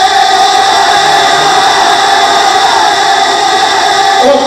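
A man singing Punjabi kalam into a microphone, holding one long unbroken note, carried loud through a PA system with heavy echo.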